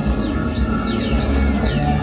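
Doepfer modular analog synthesizer playing electronic music: about three high-pitched tones glide downward one after another over low bass notes.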